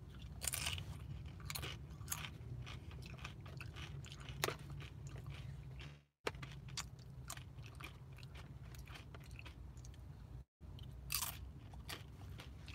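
Crisp tortilla chips being bitten and chewed close to the microphone: a run of sharp, irregular crunches over a steady low hum. The sound cuts out completely twice for a moment, about six seconds in and again near ten and a half seconds.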